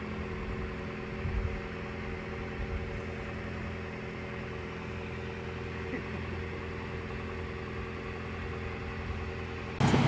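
Car engine idling steadily, hazed in thick white exhaust smoke after being overfilled with oil (ten quarts), so that it is burning the excess oil.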